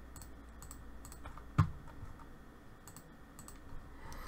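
Light, scattered clicks of a computer keyboard and mouse, with one louder click about a second and a half in, over a low steady hum.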